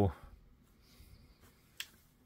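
Faint room tone, then a single sharp click near the end.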